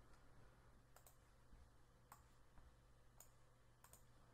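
Near silence: room tone with a few faint clicks, roughly one a second, from a computer mouse and keyboard being worked.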